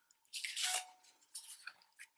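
Paper rustling and sliding as a card-stock scrapbook layout is handled and laid onto a patterned paper sheet, with a brief rustle about half a second in, then a few light ticks.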